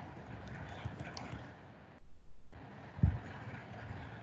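Faint computer keyboard taps as a line of code is deleted, then one short dull thump about three seconds in.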